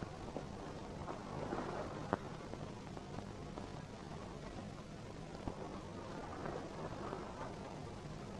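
Quiet, steady hiss and low hum of an old film soundtrack, with a few faint clicks.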